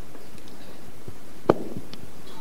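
A single sharp knock about one and a half seconds in, with a few faint small ticks around it, over a steady background hiss.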